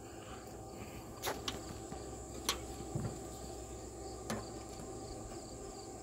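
Faint steady high-pitched trill of crickets, with a few light clicks and taps from handling, the sharpest about two and a half seconds in.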